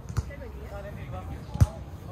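A volleyball struck by hand twice: a light hit just after the start and a louder, sharper hit about a second and a half in.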